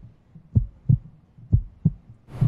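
Heartbeat sound effect: paired low thumps in a lub-dub rhythm, about one beat a second, played as a suspense cue.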